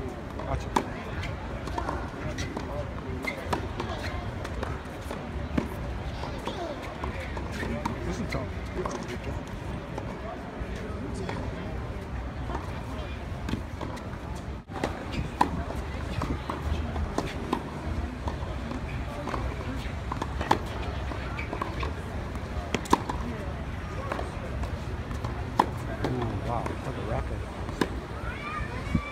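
Tennis balls struck by racquets, sharp single pops at irregular intervals a few seconds apart, over a steady background of many people chatting. There is a momentary dropout about halfway through.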